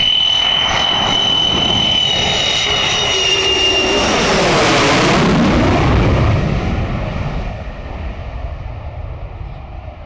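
Hellenic Air Force F-4E Phantom II's twin J79 turbojets on landing approach: a high whistling whine at first, giving way about five seconds in to a loud rushing noise as the jet passes low overhead. The sound then fades steadily as it moves away.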